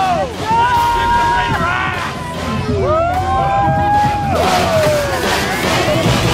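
Excited football fans giving long drawn-out yells, two held shouts that slide down in pitch at the end, over background chatter. Near the end a rising electronic sweep begins.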